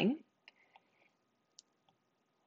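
A handful of faint, sparse clicks of a stylus tapping on a tablet screen, the sharpest about a second and a half in, just after the end of a spoken word.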